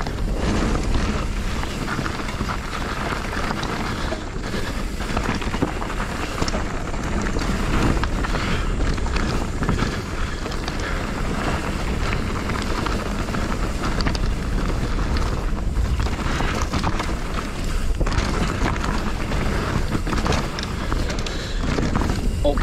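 Mountain bike riding a rough trail at speed: continuous rumble of tyres on dirt and rock, with frequent knocks and rattles from the bike, and wind buffeting the microphone.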